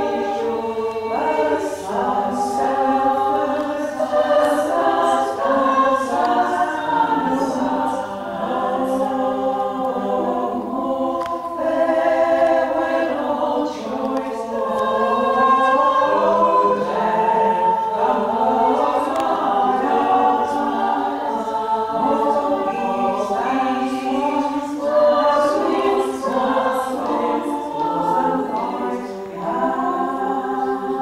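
A women's a cappella group singing unaccompanied, several voice parts at once in harmony.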